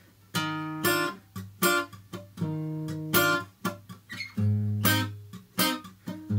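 Steel-string acoustic guitar fingerpicked in a syncopated pattern. Plucked bass notes and chord tones ring out between sharp percussive clicks where the picking hand comes down on the strings and plucks them muted. The playing starts about a third of a second in.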